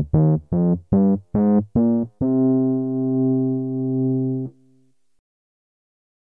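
A synthesizer keyboard sound from Ableton Live, played from the Push 2 pads, runs up the C minor scale in short, evenly spaced notes. It ends on a long held top note that is released about four and a half seconds in.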